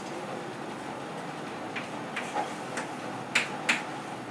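Chalk tapping and scratching on a chalkboard as words are written: a run of short, sharp clicks in the second half, the two loudest a little after three seconds in, over a steady room hiss.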